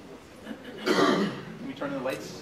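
A person clearing their throat: one rough, loud burst about a second in, and a shorter one near the end.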